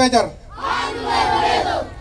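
A group of children chanting a drawn-out phrase together, about half a second in, as the end of a man's call through a microphone dies away: the group's answer in a call-and-response dance chant.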